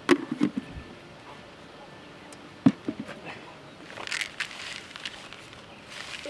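Plastic bait bucket and its lid being handled, with a few short knocks and clicks at the start and a single sharp click near the middle as the loudest sound, then a soft rustle of a hand working damp groundbait in a plastic bowl.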